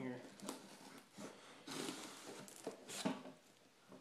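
Plastic wrapping on a box being cut and torn open: a series of short crinkling, ripping bursts, the loudest about three seconds in.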